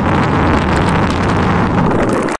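Water churning and bubbling around a camera held just under the surface: a loud, steady, muffled rushing with a deep rumble.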